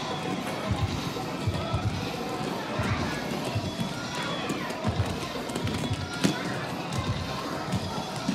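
Roller-rink din: background music and crowd voices, with roller skates and the casters of a skate-aid walker rolling and knocking on the wooden floor in irregular low thumps and a sharp click about six seconds in.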